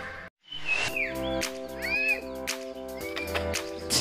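Loud background music cuts off, and after a moment of silence softer background music with long held notes begins. A few short bird chirps sound over it, about a second and two seconds in.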